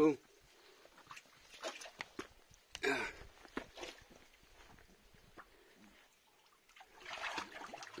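Footsteps scuffing and lightly clicking on bare rock as a person scrambles over boulders, with a brief louder rustle about three seconds in and louder movement near the end.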